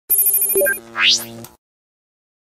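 Short electronic intro sting: a fast ringing trill of several high tones, then a quick rising sweep, cut off after about a second and a half.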